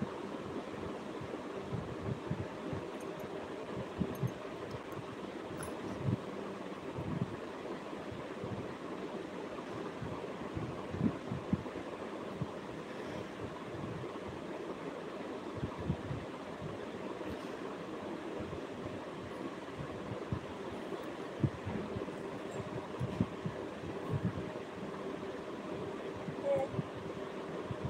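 Steady background noise with a faint steady hum and scattered soft low thumps.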